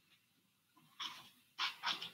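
Three short breathy puffs close to a microphone, one about a second in and two near the end: a person's breaths.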